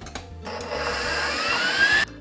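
KitchenAid stand mixer's motor starting up and speeding up, its wire whisk beating egg whites in a steel bowl. The motor starts about half a second in, grows louder, and its whine rises steadily in pitch as it comes up toward high speed.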